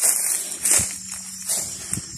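Footsteps crunching through dry grass and leaf litter, two heavier steps about a second apart, over a high pulsing rasp of insects calling in the bush.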